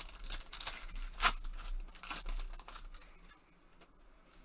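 Foil trading-card pack wrapper crinkling and tearing as it is opened, in a run of crackles over the first two and a half seconds, loudest about a second in, then dying away.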